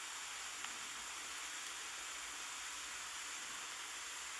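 Steady faint hiss of the recording's background noise, with a barely audible tick about two-thirds of a second in.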